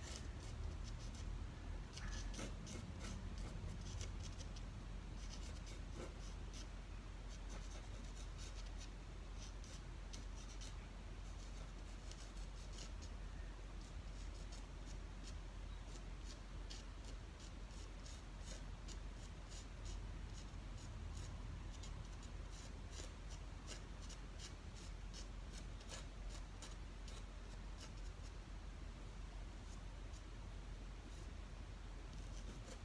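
Soft pastel being worked over sanded UART pastel paper: a steady run of faint, quick scratchy strokes as colour is laid in and rubbed over the apple.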